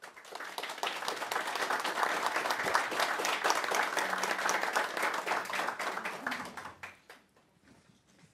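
A small group of people applauding, starting right away and dying out near the end.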